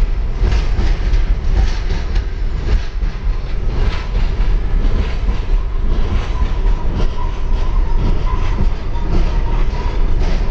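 Freight train rolling past, its steel wheels rumbling and clacking over the rail joints under the boxcars and gondolas. A faint steady whine joins about four seconds in.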